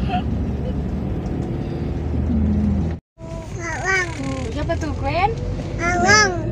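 Steady low rumble of a car heard from inside the cabin. About halfway through the sound cuts out for a moment, then voices come in over the car noise.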